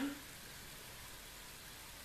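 Faint, steady hiss of room tone, with the tail of a spoken word at the very start.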